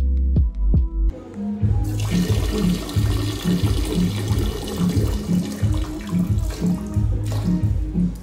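Electronic music. About a second in it changes to a pulsing bass beat of roughly two beats a second, with a steady hissing wash over it.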